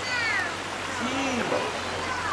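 Children's voices over the steady rush of river water: a high falling squeal at the start, then a shorter lower call about a second in.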